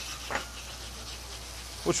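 Shallots sautéing in brown butter in a pan, a faint steady sizzle with a low hum underneath.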